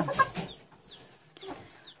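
Chickens in a coop clucking softly, with a few short high-pitched calls that fall in pitch.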